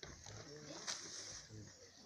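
Faint voices of people talking in the background, with one sharp click about a second in.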